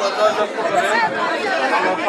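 A man speaking in Bengali through a hand-held megaphone, with chatter from the people around him.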